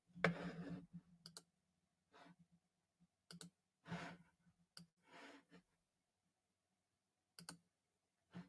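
Faint clicking from someone operating a computer: a handful of short, sharp clicks a second or two apart, with soft breaths between them.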